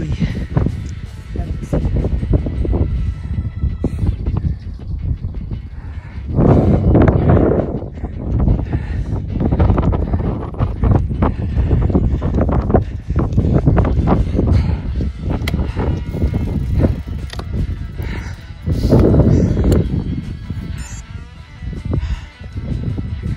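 Wind buffeting the microphone of a bike-mounted camera while riding a road bicycle uphill, in uneven gusts that swell louder several times. Background music runs underneath.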